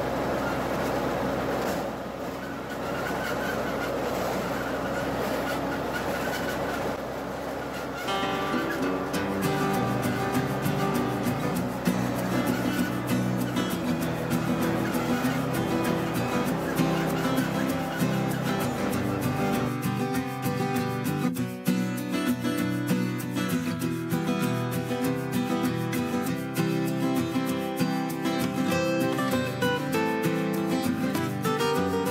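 Ford 9N tractor's four-cylinder flathead engine running steadily while it mows, with acoustic guitar music coming in about eight seconds in and taking over. The low engine rumble drops out about twenty seconds in, leaving the guitar music.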